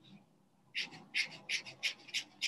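Sharpie marker flicked quickly across paper in short scratchy strokes, about three a second, starting near the middle.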